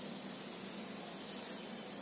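A blackboard duster wiping chalk off a chalkboard: a steady, even swishing hiss.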